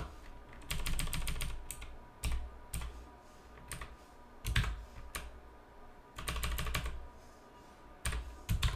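Typing on a computer keyboard: a quick run of key presses about a second in, scattered single presses through the middle with the loudest about halfway, and another quick run near the end.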